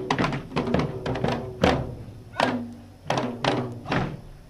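Several Manipuri dhol drums beaten together in Dhol Cholom drumming. A quick run of strokes comes first, then single heavy unison strokes, each with a short ringing tail, spaced about half a second to a second apart.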